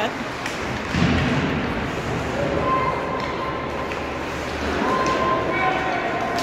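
Ice hockey game in an arena: a single thud about a second in, then spectators' voices, including a few long held calls.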